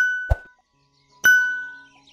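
Two identical bright ding sound effects, about a second and a quarter apart, each ringing out and fading over about half a second. A short low thump follows soon after the first ding.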